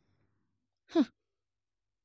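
A woman's single short scoffing "hừ" (a hmph), falling in pitch, about a second in, in otherwise dead silence.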